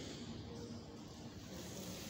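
Quiet room tone of a large hall, faint and steady, with no distinct event.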